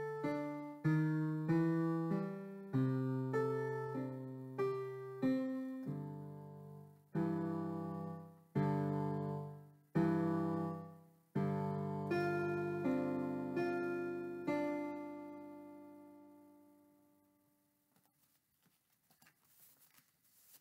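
Digital piano playing a beginner blues piece at a moderate blues tempo: a steady left-hand bass line under a right-hand melody, one note or chord about every second. It ends on a held chord that fades out over a few seconds, followed by faint rustling near the end.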